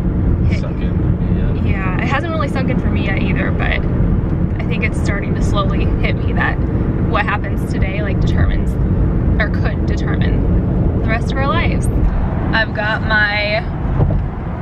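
Steady low rumble of road and engine noise inside a moving car's cabin, with voices talking over it.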